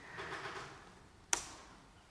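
A single sharp click of a laptop key, pressed to advance the presentation slide, about a second and a half in, after a faint soft noise at the start.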